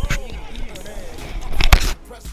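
Background music with a voice over it, and a body-worn camera's microphone brushing and knocking against a fabric jersey. The loudest rubbing comes shortly before the end.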